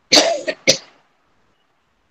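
A woman coughing twice in quick succession: a longer first cough, then a short second one.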